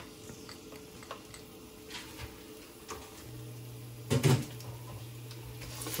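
Sliced garlic in hot oil in a nonstick pan, sizzling faintly, with a few light clinks of a glass bowl and utensil against the pan. A short, louder sound comes about four seconds in.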